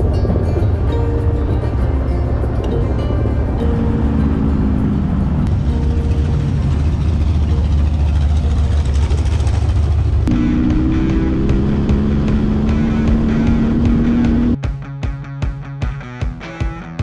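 Sandrail engine running as the rail drives off, under background music. About a second and a half before the end the engine drops out and rock music with a steady beat takes over.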